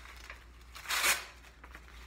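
A single short rasping rustle, about a second in, from the black back-bracing belt being handled in the hands.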